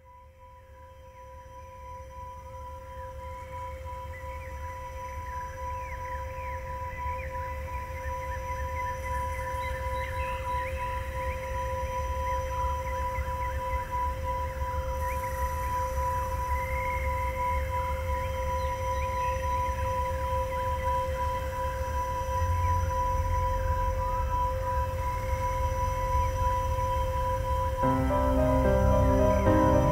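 Dark ambient intro to a deathcore album's opening track: a steady held tone over a deep rumble, with eerie warbling squeals above it. It fades in from silence and slowly swells, the rumble growing heavier near the end.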